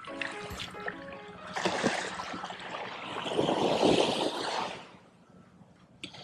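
Background music for the first second or so, then a small wave breaking and washing up the sand, swelling to its loudest about four seconds in and dying away near the end.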